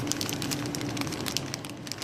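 Plastic zip-top bag crinkling as hands handle it, a dense run of small crackles and rustles.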